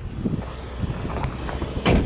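Jeep Wrangler's 3.6-litre Pentastar V6 idling with a steady low hum, under irregular rumble from wind and handling on the microphone, and a sharp knock near the end.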